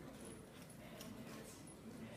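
Near silence: faint room tone with a few soft footstep-like ticks as people walk.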